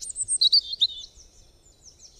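Birdsong: high chirps and quick trills, busiest and loudest in the first second, then thinning and fading out.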